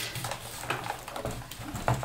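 Light plastic clicks and rattles of a loose laptop keyboard being handled and shifted on the open chassis, with a sharper click just before the end.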